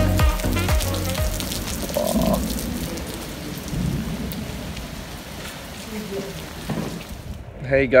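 Rain falling steadily in a storm, an even hiss that slowly grows quieter; a dance-music track fades out in the first second or so.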